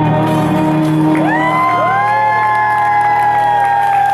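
Closing chord on an amplified Takamine acoustic-electric guitar ringing out, while from about a second in the audience starts whooping and cheering with long rising-and-falling 'woo' calls.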